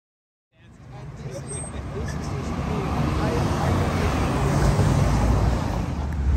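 Outdoor urban ambience fading in about half a second in and growing louder: a steady low rumble of traffic noise with faint voices.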